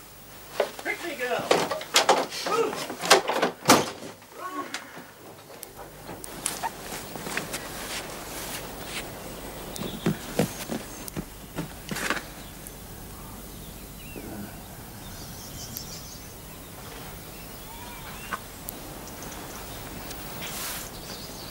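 Indistinct voices for the first few seconds, then open-air background with scattered footsteps and knocks as people walk across grass.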